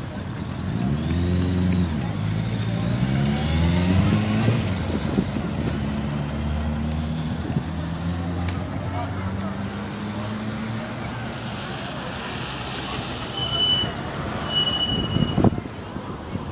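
A motor vehicle's engine pulling away, its pitch rising twice as it goes up through the gears, then running at a steady note. Two brief high tones come near the end.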